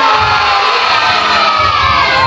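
A group of young children shouting together in one long drawn-out call that falls slightly in pitch.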